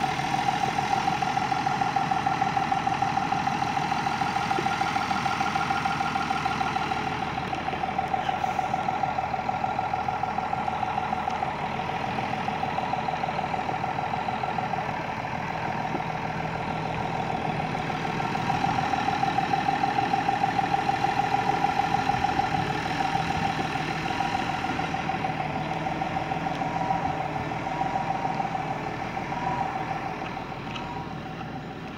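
A tractor's diesel engine idling steadily, with a fast, even pulsing beat.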